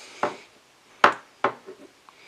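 Small metal parts and a hand tool being handled: three sharp clicks and knocks, the loudest about a second in, followed by a few faint ticks.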